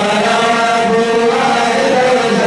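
A male voice chanting madih nabawi, Sufi praise poetry for the Prophet Muhammad, into a microphone, holding long notes that waver gently in pitch.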